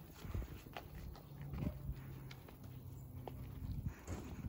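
Light footsteps on paving stones, heard as scattered short clicks, with a low steady hum from about a second in until near the end.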